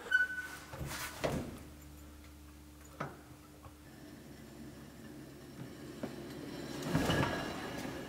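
Faint handling sounds from a Toyota AE86's door: a few light clicks, a single sharp knock about three seconds in, and a rise in rustling noise near the end as the door is worked.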